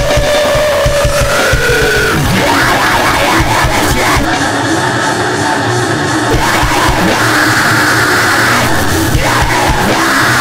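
Noisegrind played at full volume: dense, heavily distorted guitars and drums with harsh yelled vocals. A long held note slides down in pitch over the first two seconds.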